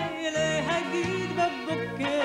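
A woman sings a Hasidic song with a winding, ornamented melody line, over band accompaniment with a bass in short, evenly repeated notes.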